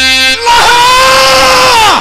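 Stage folk music breaks off about half a second in, and a man's voice through the stage microphone holds one long, loud, high cry that falls away just before the end.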